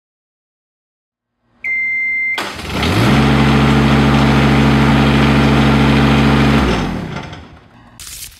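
A short high beep, then an engine starts, runs steadily for about four seconds and winds down.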